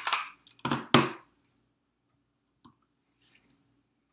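Plastic stamp ink pad and clear stamp being handled on a craft mat: a cluster of sharp clicks and knocks in the first second, the loudest just under a second in as the case is opened and set down, then only a couple of faint ticks.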